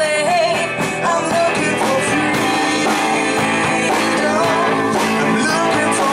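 Live rock band playing: electric guitars and keyboard with singing voices, a sung note trailing off at the very start.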